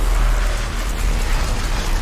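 Anime sound effect of a giant energy beam blasting out: a loud, steady rush of noise over a deep rumble.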